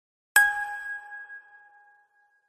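A single bell-like ding struck about a third of a second in, ringing out and fading away over about a second and a half.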